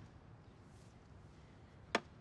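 A single sharp click near the end as a wooden chess piece, the opponent's king, is knocked over onto the board; otherwise very quiet room tone.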